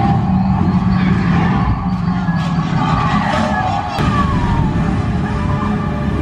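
Flight-simulator ride soundtrack: a loud, steady low rumble of flight effects with music over it. A brief falling tone comes about three and a half seconds in, followed by a sharp click.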